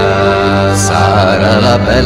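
A song: sustained accompaniment notes, with a singer's wavering melody coming back in about a second in, part of a wordless "la la la" refrain.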